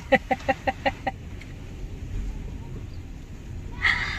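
A person's voice in a quick run of short, clipped syllables for about a second, then a low steady rumble inside a car. A voice starts again right at the end.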